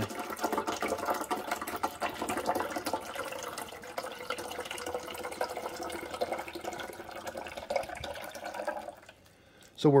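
Water poured from an upturned plastic bottle into a coffee maker's plastic water reservoir, splashing and gurgling steadily as the tank fills, then stopping about nine seconds in.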